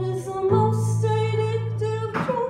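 Live acoustic guitar chords with a woman's singing voice on long held notes; a new chord comes in about half a second in.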